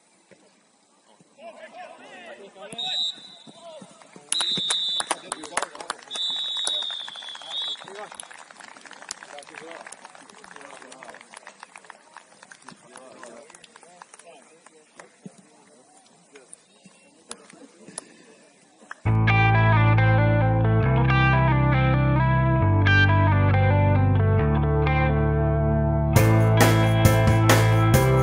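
Three blasts of a referee's whistle a few seconds in, over faint pitch-side sound: the final whistle of the match. About 19 s in, loud music with a guitar and a stepping bass line starts.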